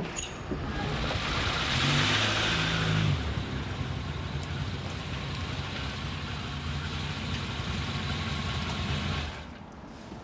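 A car engine running with a sharp click right at the start; it is loudest for the first three seconds, with the pitch stepping up, then runs steadily until it cuts off about nine seconds in, as the car pulls up and stops.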